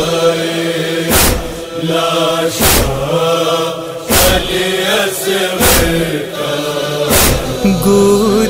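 A chorus of voices holds a slow, wordless chant between the verses of a noha. A deep thump keeps time about every second and a half.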